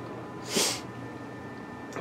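A single short sniff through the nose, about half a second in, from a man with a cold.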